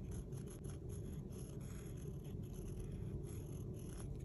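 Quiet low hum of room noise with faint light scratches and ticks of a fine paintbrush laying acrylic paint on a wooden earring blank.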